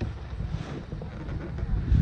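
Wind buffeting the microphone: an uneven low rumble with no distinct events.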